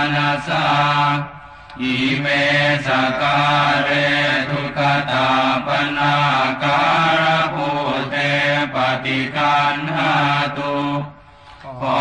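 Thai Buddhist evening chanting in Pali, with the verse asking the Buddha to accept these offerings recited on a steady monotone. The chant breaks for short breath pauses about a second in and again near the end.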